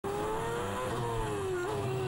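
Onboard engine sound of a McLaren-Mercedes Formula One car's 2.4-litre V8 at speed. The note climbs slightly, drops about a second in, then holds steady.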